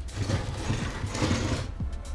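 Handling noise from the electric scooter's battery pack being shifted and turned over on a wooden workbench: a rustling scrape with a few light knocks that fades out near the end.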